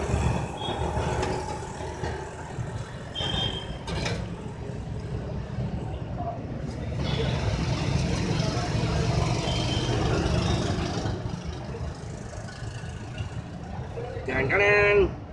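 Busy street ambience: a steady traffic rumble with background voices, and a couple of short high beeps.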